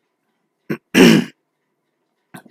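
A man clears his throat once, sharply, about a second in.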